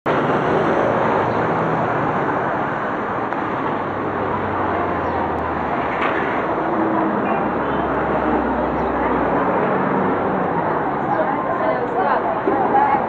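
Busy street ambience: steady traffic noise with background voices of people nearby. A vehicle engine hums low for several seconds in the middle.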